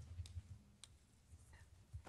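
Near silence: room tone with a low hum and a couple of faint, brief clicks.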